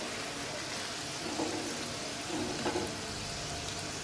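Hot oil sizzling steadily around breaded fish fingers deep-frying in a pan, still bubbling after the burner has been switched off.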